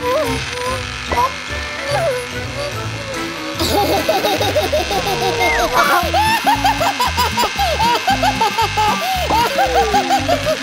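Background music with a cartoon character's gibberish voice, chattering in many short rising and falling chirps from about four seconds in.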